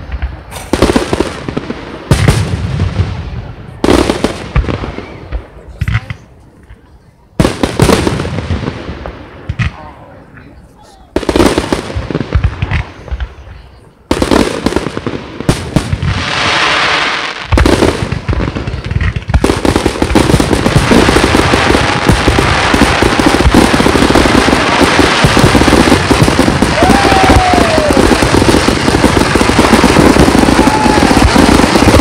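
Aerial firework shells bursting: sharp bangs one to three seconds apart, each fading away. From about two-thirds of the way in, the bangs merge into a continuous dense barrage of booming and crackling.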